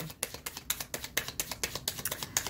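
A deck of tarot cards being shuffled by hand, the cards snapping against each other in a quick, irregular run of clicks, about eight a second.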